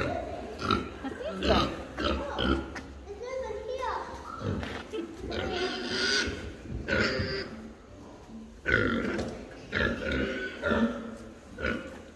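Pigs grunting in a pen, heard among voices.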